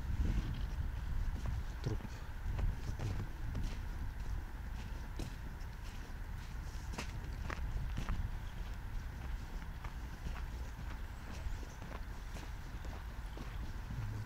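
Footsteps on packed snow at a steady walking pace, with a low rumble of wind on the microphone.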